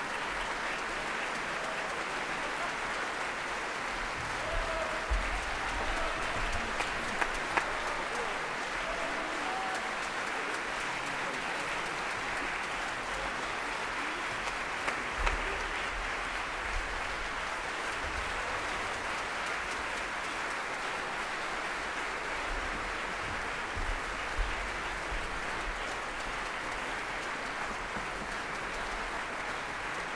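Large concert-hall audience applauding steadily, with a few short low thumps now and then.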